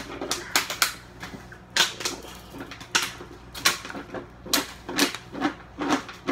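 A run of short, sharp knocks and clatters, about a dozen of them at uneven intervals.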